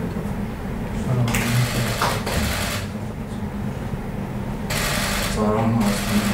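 Camera shutters clicking in two rapid bursts, each lasting about a second and a half, under low conversation.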